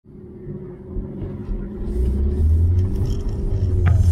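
Low driving rumble of a Ford Transit van's 2.0-litre EcoBlue diesel and tyres on a gravel track, heard inside the cab. It swells up over the first two seconds.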